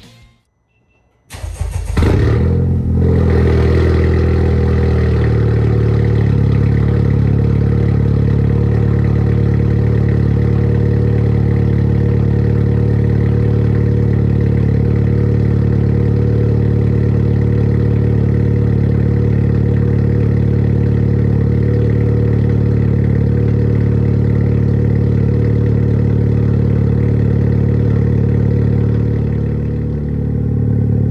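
Honda Civic Type R FK8's turbocharged 2.0-litre four-cylinder cold-starting through a catless HKS downpipe and front pipe and a Tomei full-titanium exhaust. It catches about a second in after a short crank, then idles loud and steady.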